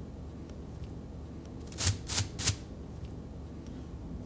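Three short scraping strokes in quick succession about halfway through, from hand work on a bow at a rehairing bench, over a low steady room hum.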